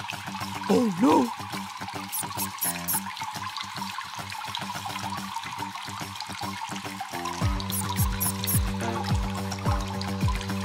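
Background music, with a steady bass beat coming in about seven seconds in, over a trickle of water dripping and pouring.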